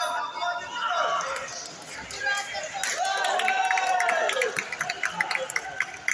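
Indistinct voices and chatter in a large sports hall, with one drawn-out voice-like tone in the middle and scattered short sharp clicks through the second half.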